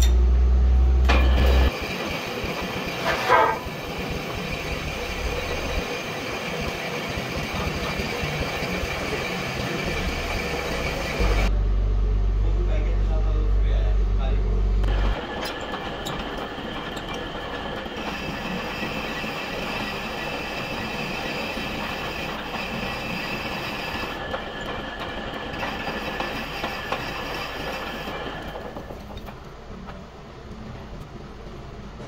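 Metal lathe running as it turns a pillow block bearing housing, a steady mechanical whine with several fixed tones, and a short squeal of the cutting tool about three seconds in. A heavy low rumble sits under it for the first two seconds and again from about 11 to 15 seconds, and the machine sound fades near the end.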